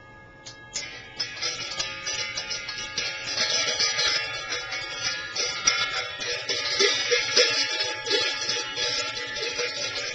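Ringing metal sound-healing percussion: a few single strikes with long ringing tones, then from about a second in a loud, dense jangle of many quick strikes and overlapping ringing tones.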